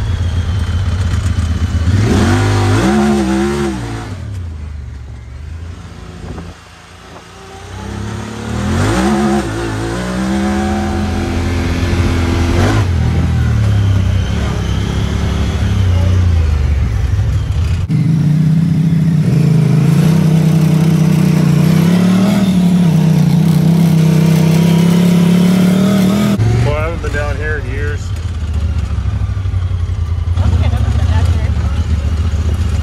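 Honda Talon 1000R side-by-side's engine heard from the cockpit while driving off-road, its pitch rising and falling with the throttle. It drops to quieter running for a few seconds early on, and holds a steadier, stronger drone for several seconds in the second half.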